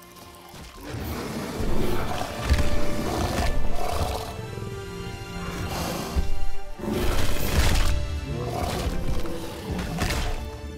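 Film soundtrack of dinosaur roars, several loud ones in a row, over dramatic background music. It starts quietly and swells about a second in.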